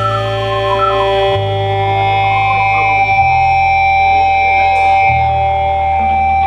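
Live improvised jazz-rock from a band of saxophone, violin, keyboards, bass guitar and drums. Long held high tones float over low bass notes that change about every two seconds, with no clear beat.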